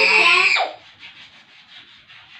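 A toddler's loud, high-pitched drawn-out call, the tail of a chanted word, that stops less than a second in; after it, only faint rustling.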